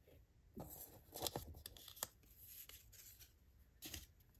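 Faint rustling of paper word cards being taken off a whiteboard by hand: a few short rustles, a sharp click about two seconds in, and another rustle near the end.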